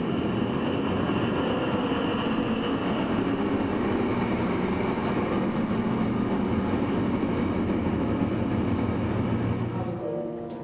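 A continuous, dense rumble with a low hum underneath, steady in level, dropping away right at the end.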